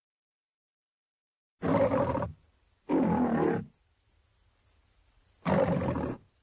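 A lion roaring three times on an old film-logo soundtrack: three short roars of under a second each, the first about one and a half seconds in and the last starting just before the end, with a faint low hum between them.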